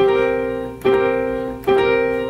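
Electronic keyboard with a piano sound playing a C and G together three times, a bit under a second apart, each strike left to ring and fade.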